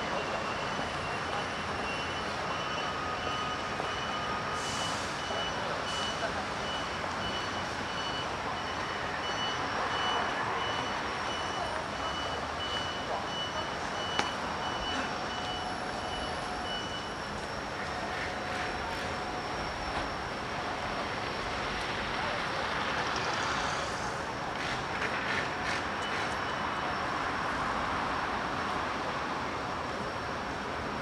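Steady city street traffic: road noise from passing cars and buses. For about the first half, a high electronic beep repeats at an even pace.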